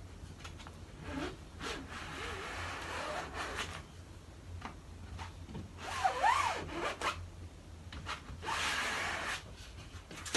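A squeegee dragged across a silkscreen mesh in three long scraping pulls, pressing ink through the screen, with a brief squeak during the second pull.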